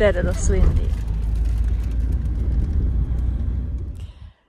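Steady low rumble of a car's cabin on the move, with a voice briefly in the first second.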